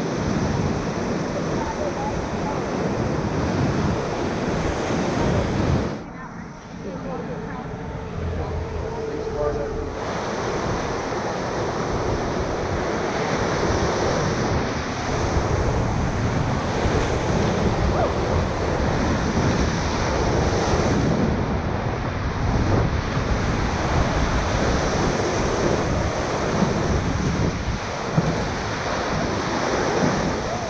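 Whitewater rapids rushing and splashing around a paddle raft, with wind buffeting the camera's microphone. About six seconds in the sound turns muffled for about four seconds, then comes back full.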